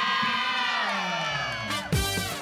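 A group of women cheering and shouting together in celebration, many high voices overlapping and sliding down in pitch. A music track with a beat comes in under them near the end.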